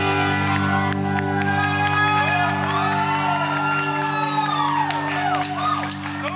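A live band and symphony orchestra hold a steady low chord while the concert crowd shouts and whoops in answer to the singer.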